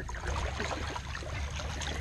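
Soft splashing and trickling of pool water as an Alaskan malamute swims, paddling with its legs, over a low steady rumble.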